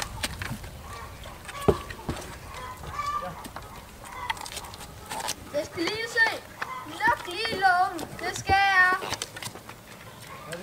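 Goats bleating with a trembling, wavering pitch: a short bleat about six seconds in, then two longer, louder ones near the end. A single sharp knock comes a couple of seconds in.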